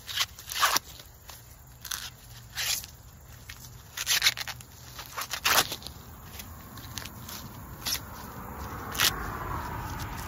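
An ear of Silver Queen sweet corn being shucked by hand, its green husks tearing off in a series of irregular ripping, crackling pulls.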